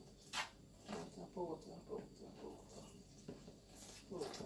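Faint voices murmuring at a low level, with one brief rasping sound about half a second in.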